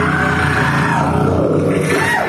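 Live band playing, with drums and electric guitar, loud and continuous, with a falling glide in pitch near the end.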